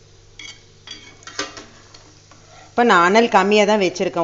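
Cashews deep-frying in hot oil in a steel pan, a faint sizzle with a few scrapes and taps of a metal slotted spoon stirring them. Near the end a woman begins speaking loudly over it.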